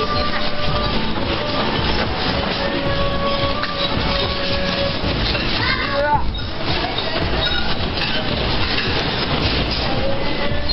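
A restaurant shaking in an earthquake: a continuous rumbling and rattling of the building, its fittings and the dishes, with people's voices mixed in and one voice calling out about six seconds in.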